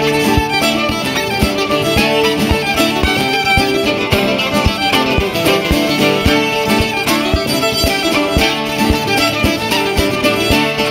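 Soundtrack music: an instrumental passage led by a fiddle over a steady drum beat, with no singing.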